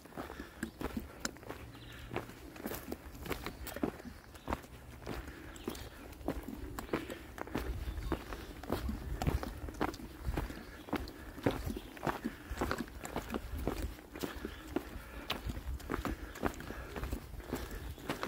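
Footsteps of a hiker walking along a dirt forest trail at a steady pace, with many short, irregular crunches and clicks.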